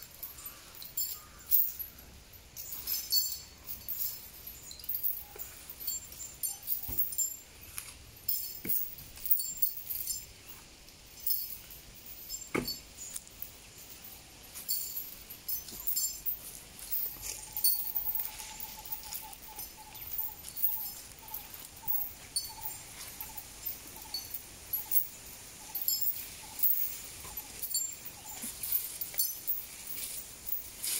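Metal chain on a working elephant clinking and jangling in short irregular bursts as the elephant moves, with one sharper knock about midway.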